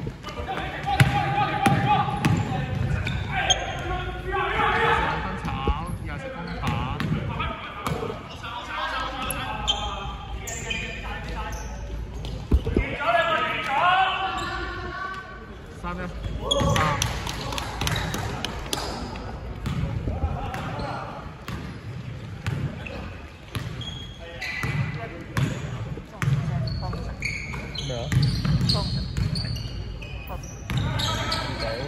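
Basketball bouncing on a hardwood court during play, short sharp thuds scattered through, with people's voices calling out at intervals, echoing in a large sports hall.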